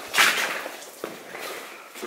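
A sharp crunch about a quarter second in, dying away into fainter scuffs and a small click: a footstep on loose rock rubble in a mine tunnel.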